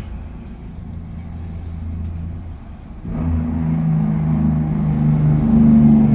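A car engine idling, then revved about three seconds in and held at a higher speed, getting steadily louder until near the end.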